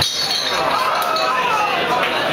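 Live rock band in a club: the bass drops out suddenly, leaving bright clinking and chiming sounds over voices.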